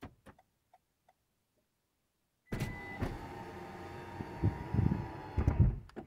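Toyota's electric window motors lowering the windows on a long press of the key fob's unlock button, the newly coded feature working. A few faint clicks, then about two and a half seconds in the motors start suddenly and run with a steady whir for about three seconds before stopping just before the end.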